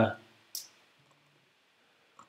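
A man's drawn-out 'uh' trails off, then a single short click comes about half a second in, followed by quiet room tone.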